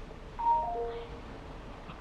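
Three short, steady chime-like tones stepping down in pitch, one after another, about half a second in, over a low background hum.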